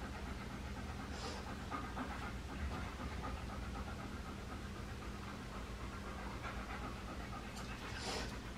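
A dog panting steadily at close range, with a low steady hum underneath.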